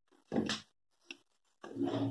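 Steel mixer-grinder jar being handled: a short knock as it comes off the base, a small click, then a longer pitched scraping sound as its lid is pulled off near the end.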